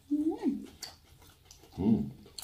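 A person humming 'mm' through a closed mouth while eating, one hum whose pitch rises and then falls, followed by a second, lower 'hmm' near the end.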